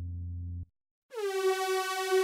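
Minimoog Model D synthesizer app: a low held pad note from the 'Bottles in the Wind' preset cuts off about two-thirds of a second in. After a brief gap, a bright, buzzy held note from the 'Circling to Land' pad preset starts just after a second in, dipping slightly in pitch as it begins.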